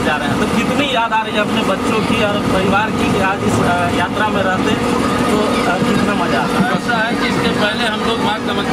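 Indistinct voices talking over the steady running noise of a train, heard inside the carriage.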